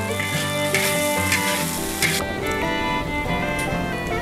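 Shrimp sizzling as they are stir-fried in oil in a wok, over background music with bowed strings; the sizzle fades out about halfway through, leaving the music.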